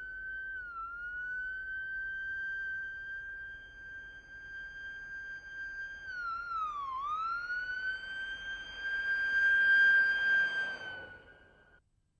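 A single held, high, whistle-like electronic tone from the soundtrack. It dips slightly in pitch about a second in, swoops down and back up around seven seconds, swells louder near ten seconds, then fades out just before the end.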